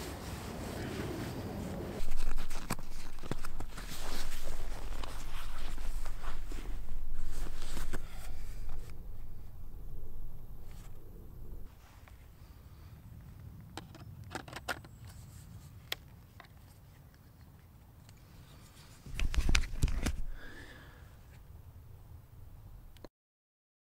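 Handling noise from rummaging in a camera bag and changing lenses: rustling, scraping and low rumbling through the first half, a quieter stretch with a few sharp clicks, then another burst of handling noise near the end.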